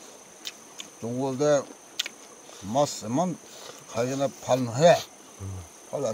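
A steady high-pitched insect drone runs through, with men's voices talking in short bursts over it.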